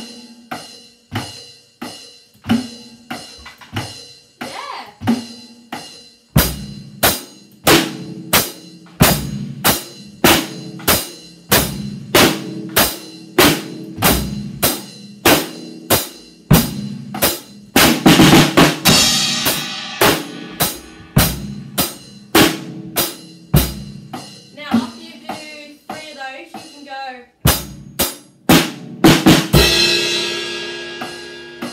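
Drum kit playing a steady beat, about two strokes a second. Heavier drum hits join about six seconds in, a louder cymbal wash comes near the middle, and a cymbal rings on at the end.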